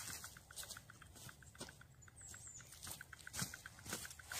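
Faint, rapid, regular ticking, about eight ticks a second, from a magnetic stir bar spinning in a glass beaker on a stirring hotplate, with a couple of faint knocks.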